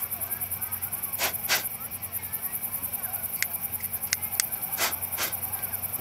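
Crickets chirping in a fast, steady, high-pitched pulse, with a few sharp clicks and handling knocks from equipment being worked.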